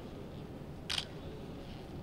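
A single camera shutter click about a second in, over a steady low room noise.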